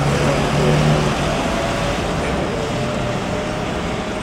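Mercedes-Benz Citaro city bus engine running as the bus pulls away from the stop: a steady low hum, loudest about a second in, over general traffic noise.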